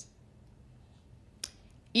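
A pause in speech at a lectern microphone: quiet room tone broken by one short, sharp click about one and a half seconds in. A woman's voice trails off at the start and comes back in at the very end.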